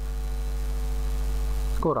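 Steady electrical mains hum on the recording, a low drone with evenly spaced overtones. A man's voice starts near the end.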